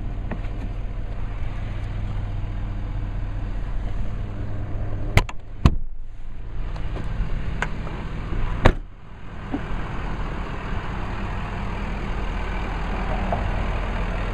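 A 2011 Ford F-250's 6.7-litre Power Stroke diesel idling steadily as a low hum, with two sharp clacks about five seconds in as the rear seat and its under-seat storage are handled, and one loud knock near nine seconds.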